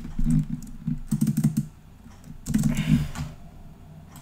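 Typing on a computer keyboard: three short runs of quick keystrokes, at the start, about a second in, and again about two and a half seconds in.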